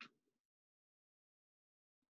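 Near silence, apart from one brief faint noise right at the start.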